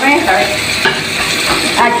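Steady sizzle of food cooking in a pot on a gas stove, with a spoon stirring the pot.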